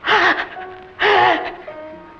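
A man's two loud, strained gasping cries of distress, about a second apart, over sustained notes of film background music.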